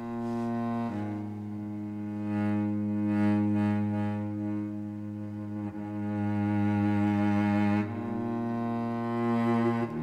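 Soloed cello part played back from the Cello Untamed sampled-cello library: long, slow bowed notes, with a note change about a second in and another near the end, swelling and easing in loudness.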